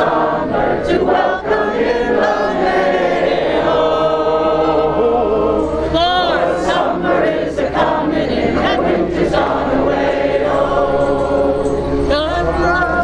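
A group of voices singing together in chorus, without a break.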